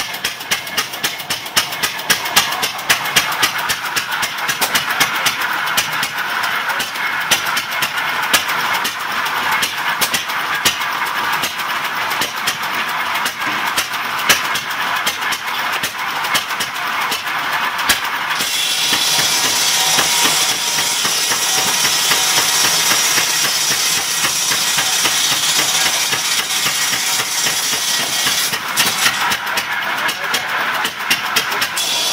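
Antique open-flywheel stationary gas engine running with a steady putt-putt beat as it belt-drives a large circular saw. A little past halfway the blade cuts into a black birch log, adding a loud hissing saw sound for about ten seconds that stops shortly before the end.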